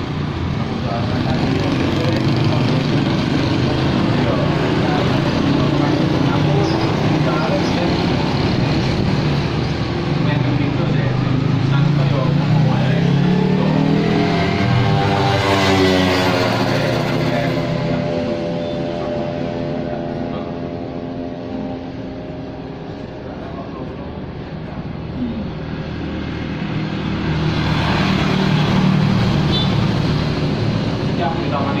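Road traffic of motorcycles and cars passing steadily. One vehicle passes close about halfway through, its engine note dropping in pitch as it goes by. The traffic eases for a few seconds before building again near the end.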